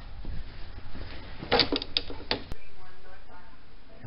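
Rusted steel truck bumper being pulled free from the frame after its bolts were removed: metal clunks and rattles about a second and a half in, ending in one sharp click.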